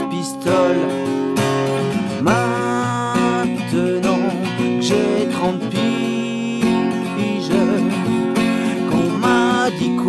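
Acoustic guitar strummed steadily in a solo acoustic punk song, between sung verses.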